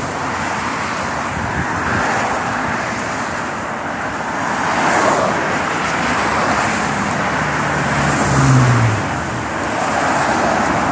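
Road traffic noise from cars passing on a multi-lane road, swelling several times as vehicles go by. The last pass, near the end, carries a low engine note that drops slightly in pitch.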